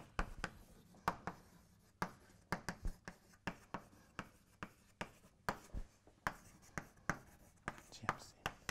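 Chalk on a blackboard as words are written out: a quick, uneven run of sharp taps and short scrapes, a few strokes a second.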